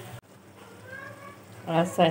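Faint sizzling of sliced ridge gourd cooking in a pot, after the sound cuts off abruptly near the start. A woman begins speaking near the end.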